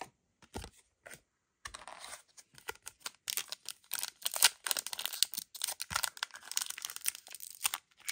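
Foil wrapper of a Disney Lorcana booster pack crinkling and tearing as it is handled and ripped open, a dense run of crackles from about a second and a half in. A few light clicks of cards being handled come before it.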